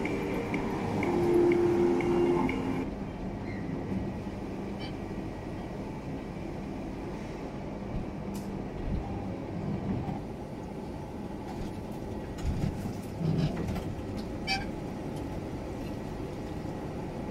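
iJooz orange juice vending machine running with a steady mechanical hum as it cuts and squeezes oranges, with a few low thumps and sharp clicks from the mechanism. Background music stops abruptly about three seconds in.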